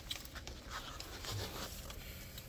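Paper sandwich wrapper and bag crinkling faintly in short scattered crackles as the sandwich is unwrapped.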